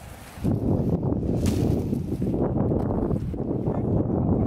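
Wind buffeting the microphone: a ragged, low rumble that sets in about half a second in.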